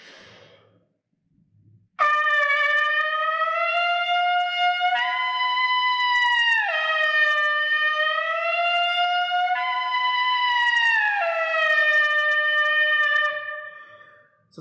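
Trumpet buzzed through the leadpipe with the main tuning slide removed: a breath, then a loud sustained buzz tone. It twice clicks up to the next higher partial for a second or two and drops back, creeping upward in pitch in between, then fades out near the end. The jumps are the 'click' in the airstream where both vibrating patches of the lips move up to the next pitch level.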